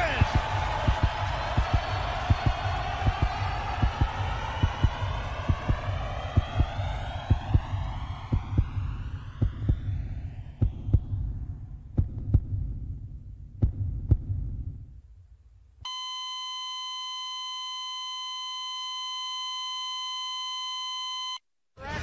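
Muffled, irregular low thumping under a swirling, sweeping hiss that fades away over about fifteen seconds. Then a steady, buzzy electronic beep tone holds for about five seconds and cuts off suddenly.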